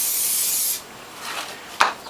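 Aerosol cooking-oil spray can hissing as it coats a plastic corflute strip, stopping abruptly less than a second in. A short knock follows near the end.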